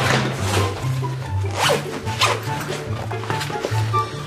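A backpack zipper being pulled and the bag rustling in several short swishes as books are handled, over background music with a steady bass line.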